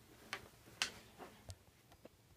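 Four or five light clicks and knocks from a person getting up and moving about close to the microphone, the loudest a little under a second in.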